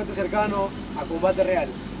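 Speech only: a man's voice talking in short phrases.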